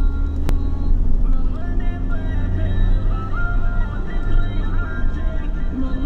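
A steady low rumble of a vehicle engine and tyres on a dirt track, with music carrying a melody of held, stepping notes playing over it.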